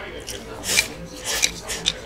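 Close-miked eating sounds from a man holding a red lacquer bowl to his mouth: three short raspy bursts, the last two closer together.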